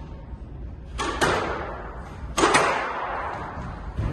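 Squash ball being struck in a rally: sharp smacks of racket and ball off the court walls, in two quick pairs about a second and a half apart, each ringing on in the court's echo.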